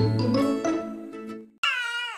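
Acoustic guitar background music fading out, then about a second and a half in a baby's loud, high-pitched wail that falls in pitch.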